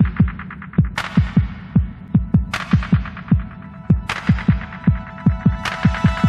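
Background electronic music: a fast, steady pulse of deep bass-drum thumps, each dropping in pitch, with a bright cymbal-like swell about every second and a half.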